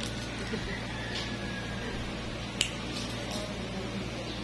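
Steady low hum with a few small metallic clicks, the sharpest about two and a half seconds in, as steel nail nippers are handled and set against a toenail.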